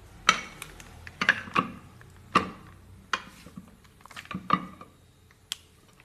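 A heavy round metal pan being handled and set down on a counter: a series of about eight clanks and knocks with a short metallic ring, stopping about five seconds in.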